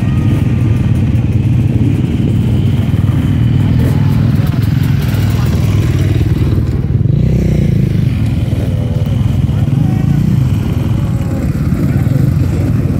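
Several dirt bike engines running together at close range, a steady, loud, low rumble with no clear rev.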